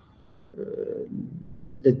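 A man's low, closed-mouth hesitation hum, a drawn-out 'mmm' of about a second, in a pause between phrases of speech. A short mouth click and his speech resume near the end.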